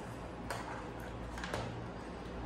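Faint handling of a plastic desk water dispenser pump head and its hose: two light clicks about a second apart, over low room tone.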